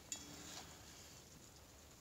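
Near silence: room tone, with a faint tap just after the start.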